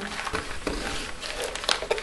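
Cardstock and paper rustling under the hands as the pieces are pressed and shifted, with scattered small clicks and taps.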